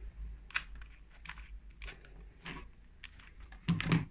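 Small clicks and rustles from a hot glue gun and a strip of glitter craft foam being handled while glue is laid on. There are about half a dozen scattered ticks, then a brief louder sound near the end.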